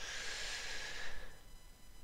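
A man drawing a breath between sentences, a soft breath about a second long.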